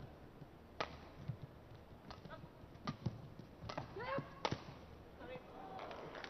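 Badminton rally: a shuttlecock struck back and forth with rackets, about five sharp cracks spaced under a second apart, with a player's short shout of "yeah" about four seconds in.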